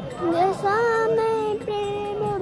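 A high-pitched voice singing a melody, coming in about a quarter second in and holding long, steady notes.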